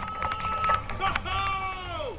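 A high steady tone, then a long drawn-out vocal exclamation that slides down in pitch at the end.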